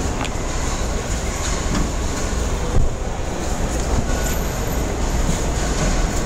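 Steady low rumble of an idling car engine and car-park background noise, with a single brief thump a little under three seconds in.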